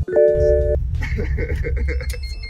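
A short chime-like tone, several pitches sounding together for about half a second and cutting off sharply, followed by voices.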